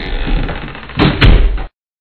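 A short run of knocks and thumps with a low rumble, the loudest pair about a second in, cutting off abruptly just before the end.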